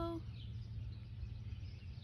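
The tail of a woman's sung note ends just after the start, leaving outdoor background: a steady low rumble with a few faint bird chirps.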